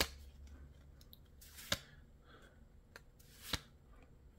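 Trading cards being slid through the hands one at a time, each card move giving a short sharp click or snap, three plain ones about a second and three-quarters apart, over a faint low hum.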